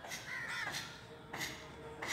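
Crow cawing: two harsh calls, the first longer than the second.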